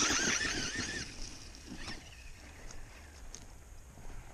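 Traxxas Stampede 2WD RC truck's 14-turn brushed electric motor whining as it accelerates away across grass. The whine is loudest at the start and fades within about a second as the truck drives off.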